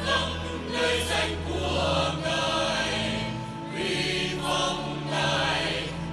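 Choir singing a hymn over held low accompaniment notes, with the bass note changing a couple of times.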